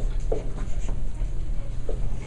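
Dry-erase marker writing numbers on a whiteboard: a string of short scratchy strokes, over a steady low background hum.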